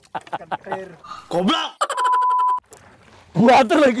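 A man laughing heartily. About two seconds in, a flat electronic beep holds for under a second and cuts off sharply. Loud laughing or speech follows near the end.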